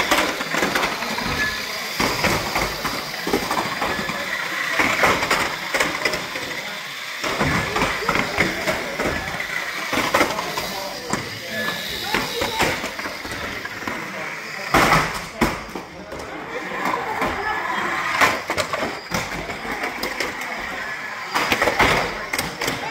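Small radio-controlled banger cars racing on a carpet track: a high motor whine with frequent sharp clacks as the plastic shells hit the barriers and each other, loudest about 15 and 18 seconds in, over a background of voices.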